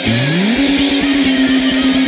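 Rock band track with electric bass playing along: a pitch slide rises over about the first half second into a held high note over fast, even drumming.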